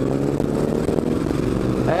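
Triumph Street Scrambler's 900 cc parallel-twin engine running while riding, heard on board, its revs easing slowly and steadily.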